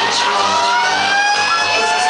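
Pop song played loud over a nightclub sound system, its long held notes sliding up and down in pitch.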